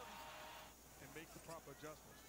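Near silence, with faint speech from the basketball broadcast's commentary in the second half.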